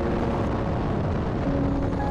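Race car at speed, heard from a roof-mounted camera: a loud, steady roar of engine and wind with no let-up. A few light mallet-percussion music notes sound over it.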